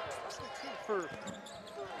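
A basketball dribbled on a hardwood court, with one sharp bounce at the very start and fainter ones after, over low arena background noise.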